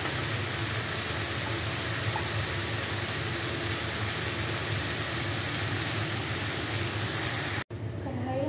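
Achar gosht curry sizzling steadily in a karahi over a gas flame, as its thick gravy fries down; the sound cuts off suddenly near the end.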